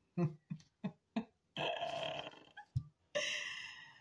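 A woman laughing: a few quick, short bursts of laughter, then two longer breathy, wheezing laughs.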